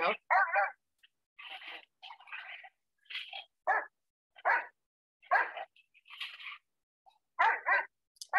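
Dogs barking and yelping in short, separate bursts, roughly one a second, while handlers hold apart two dogs after a fight. Brief human voices come in among them.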